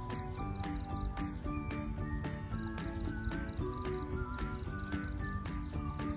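Background music with a steady, clip-clop-like percussive beat under a melody with gliding high notes.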